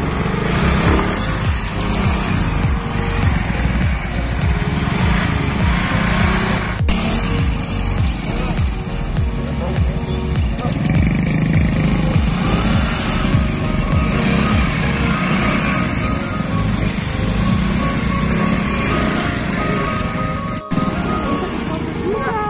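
Small motorbike engines running and revving as the bikes are worked through deep mud, under background music that carries a melody from about halfway through.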